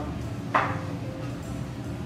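One short clink of a dish about half a second in: a plate with an upturned aluminium baking cup on it knocking down as a lava cake is turned out of its cup.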